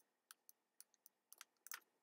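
Faint, irregular clicks and key presses of a computer mouse and keyboard, about seven short clicks in two seconds.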